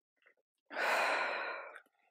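A woman's long, breathy exhale, lasting about a second from a little past the middle: she is blowing out to catch her breath after a round of exercise.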